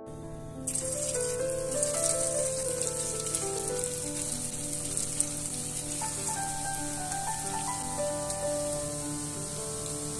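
Grated-potato balls deep-frying in hot oil, a dense sizzle that starts under a second in as the first balls go into the pan and keeps on steadily. Soft piano background music plays over it.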